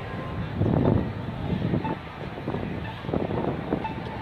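Wind buffeting the microphone over street noise, in uneven gusts with the strongest about a second in. Faint short beeps of a pedestrian crossing signal sound about every one to two seconds.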